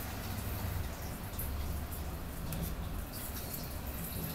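Torn book-page paper rustling and scratching faintly under fingertips as it is pressed down into wet Mod Podge on particle board, over a steady low hum.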